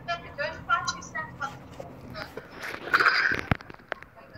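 Voices in a hall: speech through the first half, a louder spoken word about three seconds in, then two short knocks.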